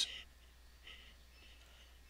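Faint breathing near a microphone over low background hiss, with the tail of a spoken word at the very start.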